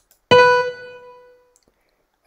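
A single piano note from Noteflight's playback, sounding as a note is entered into the score; it is struck once and fades away over about a second.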